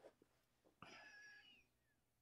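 Near silence, with one faint, short high-pitched call or squeak about a second in, its pitch dipping slightly as it fades.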